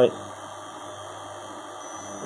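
Steady hum of a power inverter's cooling fan and an induction plate cooker running at power level 8, about 2100 W, with the inverter near its load limit. A faint high tone comes in near the end.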